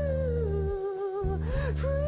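Background music: a slow, sustained melody line that slides between notes over held bass notes.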